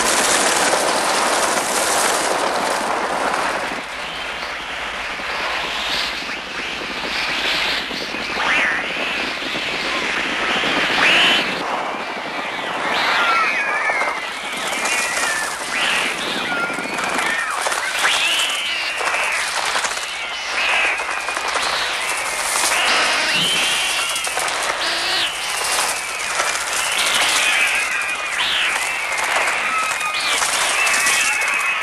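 Children screaming as a flock of crows attacks, with a loud rush of flapping wings at the start and dense, wavering bird cries that continue throughout. The crow cries and wingbeats are the film's electronically made bird sounds, produced on the Mixtur-Trautonium.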